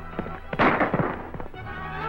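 Orchestral film-serial music over a galloping horse's hoofbeats. About half a second in, a loud gunshot-like bang rings out and dies away over about a second.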